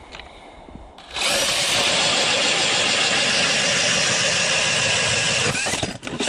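DeWalt cordless drill driving a StrikeMaster Mora hand ice auger through a Clam drill plate, boring down into snow and ice. The drill starts about a second in, runs loud and steady at full speed for about four and a half seconds, then stops just before the end.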